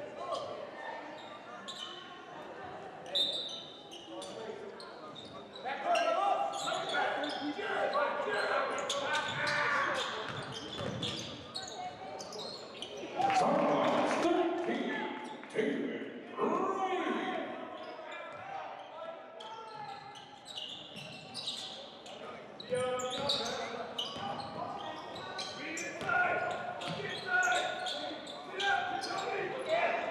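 A basketball bouncing on a hardwood gym floor during play, with indistinct players' voices calling out, echoing in a large gym.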